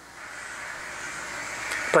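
A man's long in-breath, a soft hiss that grows steadily louder until he starts speaking near the end.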